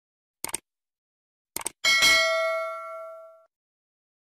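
Subscribe-button animation sound effect. There is a short click about half a second in and two quick clicks at about a second and a half. Then a bright bell ding rings out and fades away over about a second and a half.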